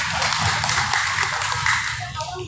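A seated crowd clapping: a dense, even patter of applause that dies away at the end.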